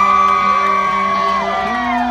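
Live rock band holding sustained electric guitar chords, moving to a new chord near the end, with whoops from the crowd.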